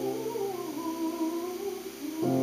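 Soprano singing a slow, wavering phrase in classical art-song style over a sustained piano chord; the voice rises briefly, dips, then holds its note.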